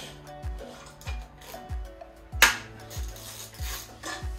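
Background music with a steady beat, about one and a half beats a second, over faint metal clinks of a hand wrench cracking loose the intake plenum bolts on a Mitsubishi GTO's twin-turbo V6. One sharp, loud crack about two and a half seconds in.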